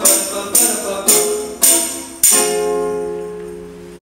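Acoustic guitar strumming chords, about two strokes a second, each stroke with a bright jingling top. A final chord about two seconds in is left to ring and fade away.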